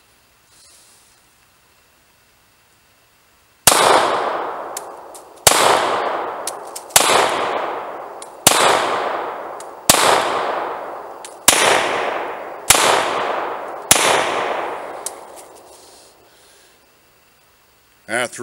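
Beretta Model 70S .380 ACP pistol fired eight times at a slow, steady pace, the first shot a few seconds in and the rest about a second and a half apart. Each shot is followed by a long echo that fades over a second or two.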